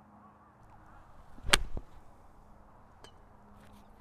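Golf iron striking a ball off turf: a faint swish of the downswing, then one sharp crack of impact about one and a half seconds in, followed by a softer knock.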